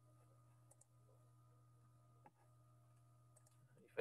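Near silence: a few faint computer mouse clicks, the clearest a little over two seconds in, over a low steady hum.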